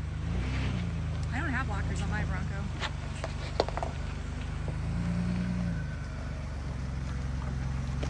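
Ford Bronco engine running at low revs as it crawls over rock in four-low, the revs rising briefly twice, about half a second in and again about five seconds in. A few sharp knocks sound in between.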